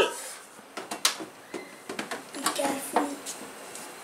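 Quiet children's voices in a small room, with a few light knocks and clicks scattered through it.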